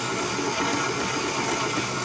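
Electric stand mixer running steadily, its paddle attachment beating butter and powdered sugar into buttercream frosting.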